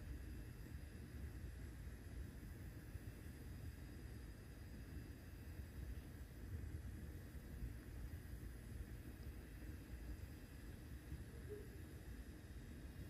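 Quiet room tone: a faint, steady low rumble and hiss with no distinct events.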